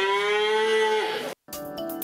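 A cow mooing once: one long call that rises slightly and drops off at the end, lasting about a second and a half. Theme music starts just after it.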